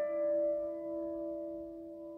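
Upright piano chord struck just before, ringing on and slowly fading away with no new notes played.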